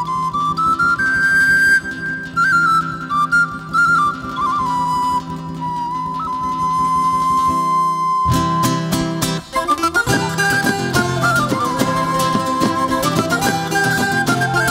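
Mallorcan folk jota: a flute plays a melody over a steady low drone, then a little past halfway guitars and rhythmic percussion come in with a fuller ensemble sound.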